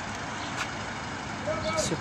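Steady background noise of city street traffic, with a woman's voice coming in near the end.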